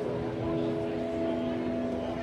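Live band music at a street dance: several steady notes held together as a chord, over a low rumble of outdoor noise.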